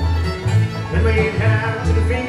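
Live bluegrass band playing: fiddles, banjo and acoustic guitar over an upright bass that alternates between two notes about twice a second.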